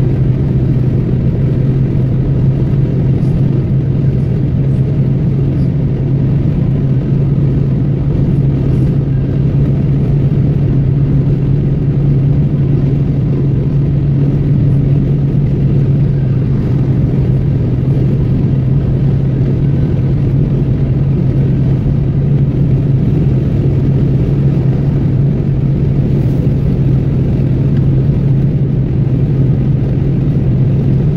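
Steady road and engine noise heard inside a car cruising at motorway speed: a constant low drone with tyre rumble, unchanging throughout.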